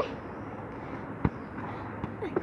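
Steady outdoor background noise, with one short sharp knock a little over a second in.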